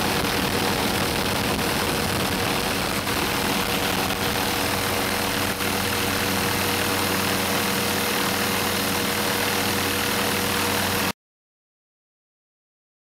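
Steady engine drone with a constant hum and hiss, typical of a helicopter heard from inside its cabin. It cuts off suddenly near the end.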